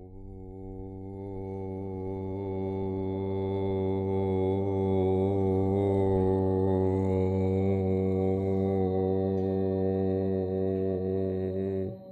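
A man's deep voice chanting one long, unbroken note at a steady pitch for about twelve seconds. It swells louder over the first few seconds and then stops abruptly.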